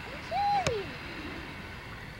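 A high-pitched drawn-out vocal 'hoo' call that rises briefly and then slides down, with a sharp click partway through it.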